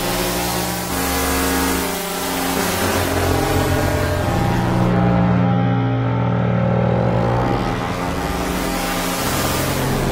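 Sustained synth pad chords processed by Ableton Live's Chorus with its rate switched to ×20, giving a fast warbling pitch wobble. The wobble's speed and depth shift as the modulation rate and amount are changed.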